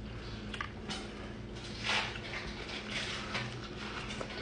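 Mouth sounds of a person eating a lamb chop: faint chewing and small wet clicks, with a brief louder rush of noise about two seconds in and a softer one about a second later.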